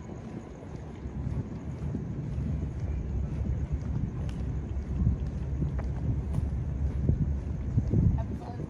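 Low wind rumble on a body-worn camera's microphone, growing louder about a second in, with faint regular ticks about twice a second from walking steps.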